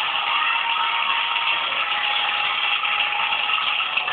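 Experimental noise music played on hand-worked electronic gear: a loud, steady, dense wash of distorted noise with faint held tones under it.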